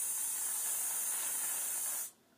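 Aerosol can of whipped cream spraying onto a latte in a mug: a steady hiss that stops suddenly at the very end.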